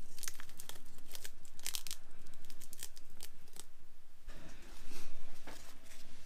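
Blue painter's tape being peeled off a fishing rod's grip: a run of crackly ripping, then a louder rustling stretch for about a second, a little past four seconds in.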